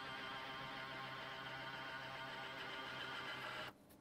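Steady, buzzing hum of a small electric machine, holding one unchanging pitch, cutting off abruptly near the end.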